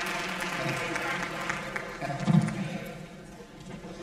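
A theatre audience laughing and chattering, with scattered clapping, and a man's loud laugh into a handheld microphone about two seconds in. The noise dies down after about three seconds.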